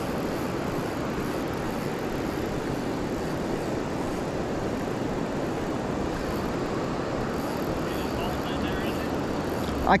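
Steady, even rushing of fast river water in the tailwater below a hydroelectric dam, holding at one level throughout.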